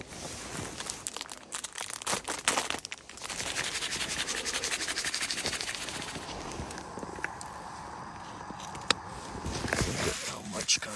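Rustling and crinkling of handled camping gear. It carries scattered sharp clicks at first, then a long run of fast, steady rustling.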